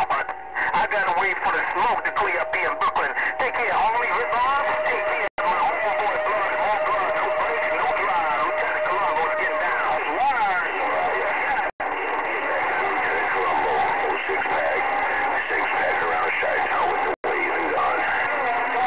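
Galaxy CB radio receiving garbled, overlapping voices from several stations at once, with a steady whistle through the first half. The sound is cut by three brief silences.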